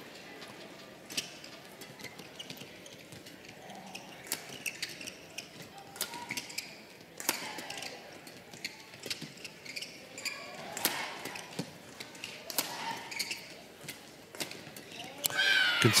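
Badminton rackets striking a shuttlecock again and again in a long doubles rally: crisp, sharp hits at an uneven pace, roughly one every half second to a second, over the faint murmur of the arena.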